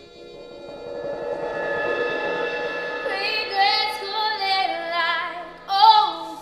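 Live music fading in: sustained accompanying chords, joined about halfway through by a female lead voice singing with a wavering vibrato.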